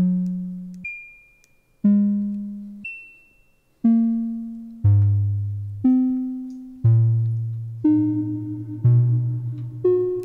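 Eurorack modular synthesizer oscillator playing about one note a second, each struck sharply and then dying away, each at a different pitch. Two short high beeps fall between the first few notes. The pitches come from the Rossum Control Forge working as a randomized quantizer on a falling envelope from Make Noise Maths, each note set relative to the one before.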